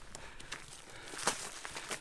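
Footsteps on a dirt and gravel track: a few soft scuffs, with one sharper step a little past the middle.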